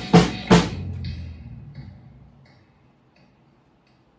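Drum kit played hard, two loud hits in the first half-second, then the playing stops and the sound rings out, fading to near silence about three seconds in.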